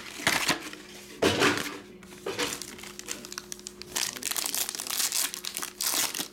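Foil trading-card pack wrapper crinkling and tearing as it is ripped open by hand, in uneven bursts, the loudest a little over a second in.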